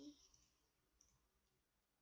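Near silence with a single faint computer-mouse click about a second in, after a spoken word trails off.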